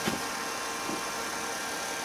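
Steady background hum and hiss with a faint click near the start, as the metal-cased charger is handled.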